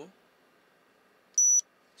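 A100S OBD head-up display giving one short, high-pitched beep about a second and a half in as its button is pressed, acknowledging the press while the speed calibration setting is being saved.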